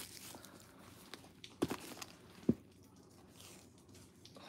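Faint rustling and a few short knocks as a canvas-and-leather Coach City tote is handled and pulled open by its handles.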